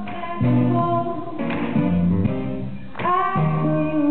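A song performed live on piano, with a woman singing over sustained chords. New chords are struck about one and a half and three seconds in.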